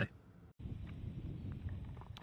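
Wind noise on the microphone outdoors: a steady low rumbling haze that cuts in suddenly about half a second in, after a brief near-silent moment.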